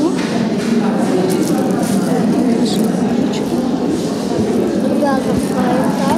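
Indistinct talk of several people in a room, voices overlapping; one voice becomes clearer near the end.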